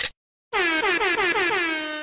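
An edited-in horn sound effect: a buzzy honk with many overtones that pulses rapidly while sliding slowly down in pitch for about a second and a half. It starts after a brief burst of noise and a moment of silence.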